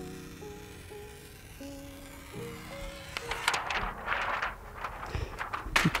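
Soft background music with slow held notes. From about halfway, a thin plastic privacy-filter sheet rustles as it is handled and its protective film is peeled off, ending with a sharp click.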